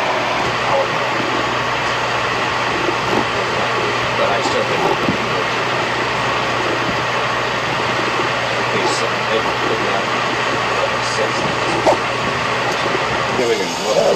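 Steady ventilation and machinery noise filling a submarine control room, with a low hum that drops out just before the end and faint voices talking in the background.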